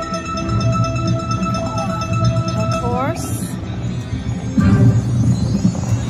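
Buffalo-themed video slot machine's bonus-round music and sound effects: long held electronic tones, then a rising swoop about halfway through as the next free spin starts, over a steady babble of casino noise.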